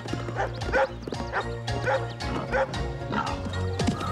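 Hunting dogs barking repeatedly, several short barks, over a steady orchestral music score.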